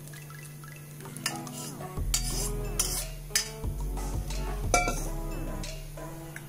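A steel spoon clinking and scraping in a steel mesh strainer as thick tamarind chutney is worked through it, a few sharp clinks from about two seconds in, over background music.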